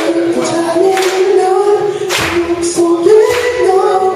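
Live rock band playing, with a lead vocalist singing long held notes over guitars, keyboard and drums. Cymbals crash several times.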